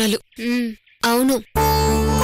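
Short spoken phrases in a woman's voice, then background music cuts in sharply about three-quarters of the way through as a dense, steady sustained chord.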